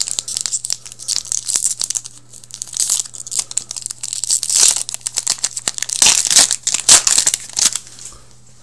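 A foil hockey card pack, 2018-19 Upper Deck Series 2, being torn open and crinkled in the hands, the crackle heaviest about three-quarters of the way through as the cards are pulled out.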